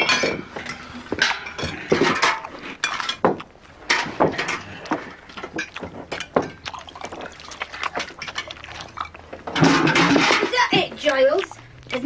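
Indistinct voices with scattered sharp clinks and knocks; the voices grow denser near the end.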